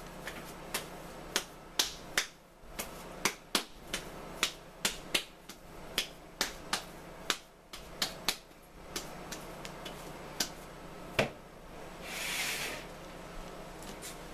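Hands shaping bread dough into balls in a wooden bowl: a run of sharp, irregular clicks and smacks, several a second, then a brief rustle near the end.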